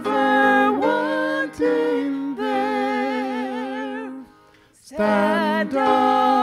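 A woman and a man singing a hymn together into microphones, in long held notes with vibrato. The singing breaks off briefly about four seconds in, then goes on.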